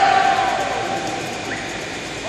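A person's long drawn-out call: one held note that falls slightly and fades out about a second in, over general hall noise.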